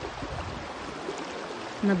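Shallow small river rushing over stones, a steady sound of running water.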